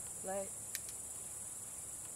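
Crickets chirring in a steady, high-pitched chorus, with a single faint click just under a second in.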